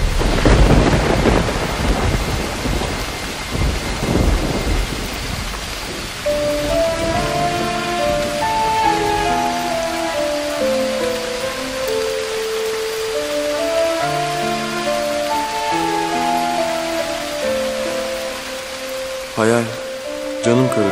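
Thunder rumbling over steady heavy rain. After about six seconds the rumble dies away, and a slow melody of held notes plays over the continuing rain.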